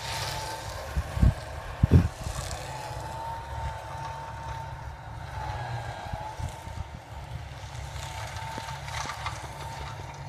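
Distant John Deere 7530 tractor's six-cylinder diesel working steadily while driving a Teagle topper cutting rushes, heard as a low drone with a steady whine that wavers slightly in pitch. A couple of low bumps on the microphone about one and two seconds in.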